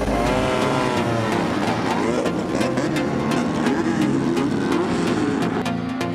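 Midget race car engines revving on a dirt track, their pitch rising and falling, with background music with a regular beat underneath.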